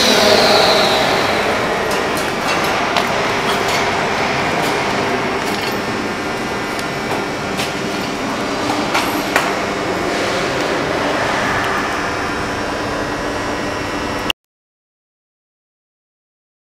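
Steady machinery noise of a factory workshop, with a few light clicks and knocks over it; it cuts off abruptly about fourteen seconds in.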